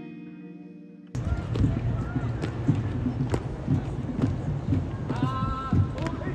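Acoustic guitar music fading out in the first second, then an abrupt cut to the live sound of a street parade of costumed Roman legionaries marching past: low thuds about twice a second over the hubbub of the onlooking crowd.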